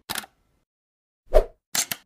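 Animated-logo intro sound effects: a short tick, then a pop, the loudest sound, about a second and a half in, then two quick clicks near the end.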